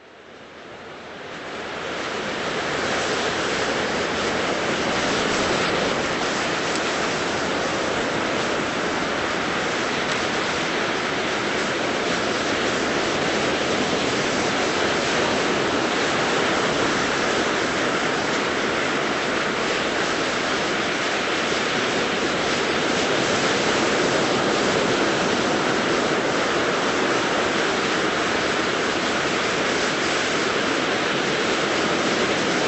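Ocean surf washing onto a beach: a steady rush of waves that fades in over the first couple of seconds.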